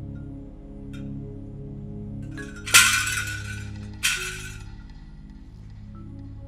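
Low, sustained drone of a film score, with two sudden bright, clinking crashes about three and four seconds in, the first the loudest, each dying away within about a second.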